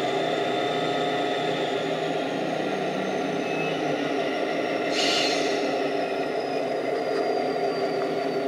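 Kato Sound Box playing a synchronized EMD diesel locomotive sound through its speaker: the engine runs steadily under a high whine that slowly falls in pitch, with a brief hiss about five seconds in.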